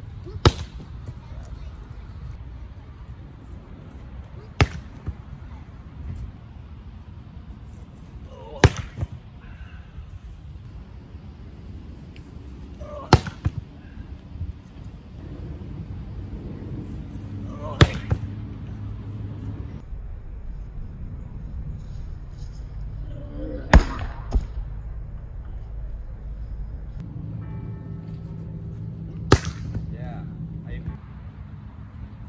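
A volleyball spiked by hand out of a spike trainer's holder: seven sharp smacks about every four to six seconds. A low steady rumble runs underneath.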